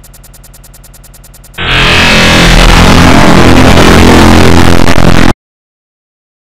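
A quiet, fast repeating electronic pattern. About a second and a half in, it is cut off by a sudden, extremely loud, clipped and distorted blast of music that lasts about four seconds and stops abruptly into silence.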